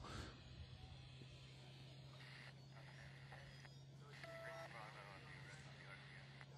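Near silence on the broadcast feed: a faint steady low hum, with a short faint beep about four seconds in.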